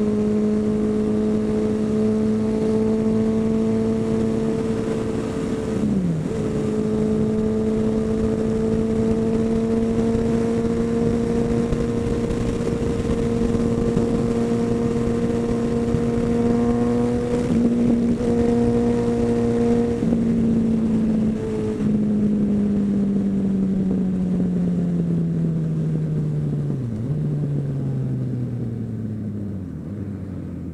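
Suzuki Bandit's inline-four engine pulling steadily at highway speed, with wind rush, and a few brief dips in pitch. Over the last several seconds its pitch falls steadily as the bike slows, with one more short dip near the end.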